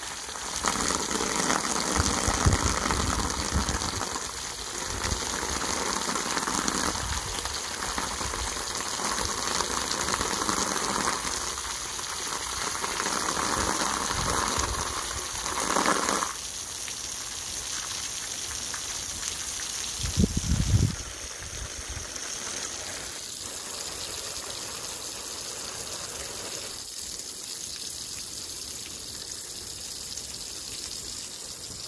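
Garden hose spray splashing onto wet soil and puddled water, a steady hiss that grows softer about halfway through. A brief low bump comes a few seconds later.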